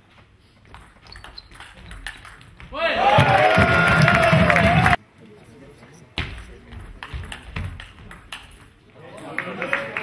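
Table tennis rally: the ball clicking off bats and table in quick irregular strikes, then a loud crowd shout and cheer at the end of the point that cuts off abruptly about five seconds in. A second rally of ball clicks follows, and another loud crowd shout starts near the end.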